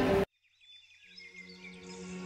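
Loud room noise cuts off abruptly, leaving a moment of silence. Soft music then fades in, with high chirping sounds over a held low tone.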